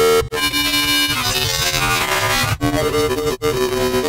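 Synthesizer playing held notes of about the same pitch, broken by short gaps about a third of a second in, again after two and a half seconds and just before the end, with the tone's brightness changing from note to note.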